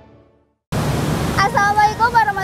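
The tail of a theme tune fading out, a brief silence, then steady rushing outdoor background noise that cuts in suddenly, with a woman's voice starting to speak over it near the end.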